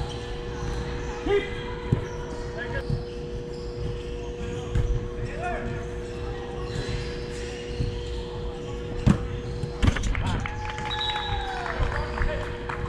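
Indoor soccer on artificial turf: a ball being kicked and bouncing, with two sharp hits close together about nine and ten seconds in, and players shouting, over a steady two-note hum. A falling tone sounds near the end.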